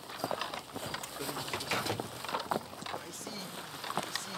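A horse's hooves clopping in uneven knocks, with indistinct voices in the background.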